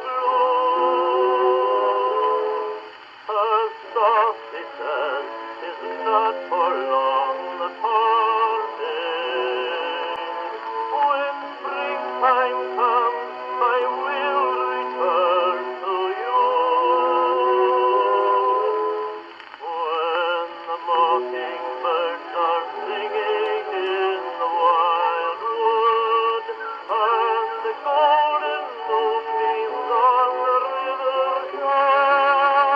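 A song playing: a sung melody with a wavering vibrato voice, sounding thin and tinny with no bass.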